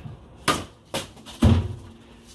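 A wooden cricket bat swung at a plastic bottle of water standing on a plastic garden table: three sharp knocks about half a second apart, the last the loudest and deepest, with a short ringing after it.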